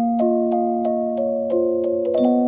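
Music box playing a slow, gentle melody, about three bright plucked notes a second, each ringing on and overlapping the next.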